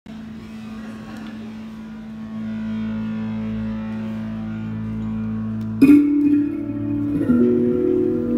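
Live instrumental rock with electric guitars. A single note is held and swells about two seconds in. Near six seconds a sharp pluck brings in higher notes, and they shift again about a second later.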